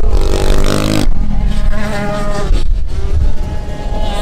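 Small 50cc two-stroke kids' motocross bike engines revving up and down on the track, the pitch rising and falling as the riders open and close the throttle.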